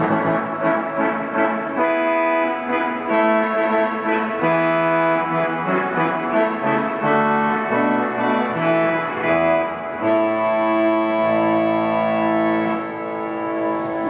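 Pipe organ (Balbiani Vegezzi-Bossi, 1964) played on its fagotto reed stop: a slow phrase of sustained chords, with a bass line entering about four seconds in. In this range the reed sounds tuba-like. The last chord is released near the end and rings on in the church.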